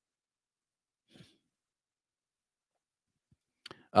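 Near silence with a faint sigh from a man at a close microphone about a second in, and a brief breath just before he starts speaking at the very end.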